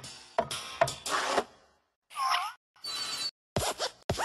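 Cartoon sound effects for an animated desk lamp hopping: a run of short knocks and scrapes, a brief squeak that bends up and down a little after two seconds, a longer scraping squeak around three seconds, then more quick clicks near the end.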